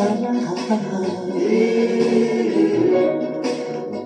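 A song playing, with a sung vocal line that holds a long note through the middle over the accompaniment.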